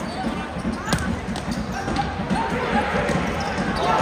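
Futsal ball being dribbled on a hard indoor court, with a sharp thump about a second in, over a hall of crowd and player voices. The crowd noise swells near the end.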